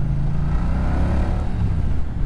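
Moto Guzzi V100 Mandello's 1042 cc 90-degree V-twin running at low road speed, a low engine note with road and air noise over it.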